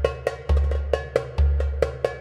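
Background music: a quick percussive beat of sharp clicky hits, about four a second, over a deep bass line that changes note about once a second.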